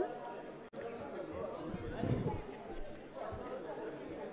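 Low background chatter of several indistinct voices talking at once in a large debating chamber, with the sound cutting out for an instant a little under a second in.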